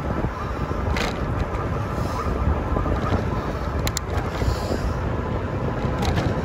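Wind buffeting the microphone and road noise from a Yamaha YPJ-TC electric-assist bike riding along a paved street, heavy at the low end, with a couple of sharp clicks or rattles about a second in and near four seconds.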